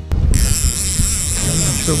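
Large conventional fishing reel buzzing steadily, its ratchet clicking as line runs on the spool under the angler's hands.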